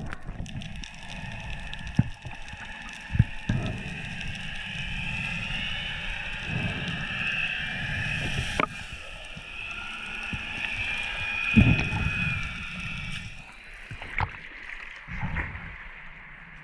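Underwater water rush on an action camera as a diver swims up, with a few dull thumps and knocks of movement against the housing. Near the end the sound changes as the camera breaks the surface.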